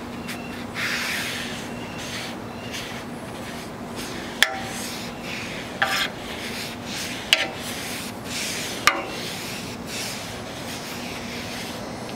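Paper towel held in metal tongs wiping oil across a rolled-steel griddle top: a steady rubbing, with four sharp metallic clinks of the tongs on the steel spread through the middle.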